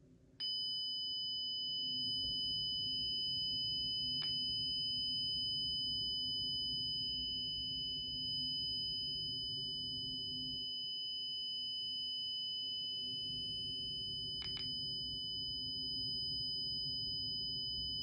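Honeywell Lyric alarm system siren sounding a steady, high-pitched electronic alarm tone for a front door zone alarm. It starts about half a second in and cuts off just before the end. Two faint clicks come through during it.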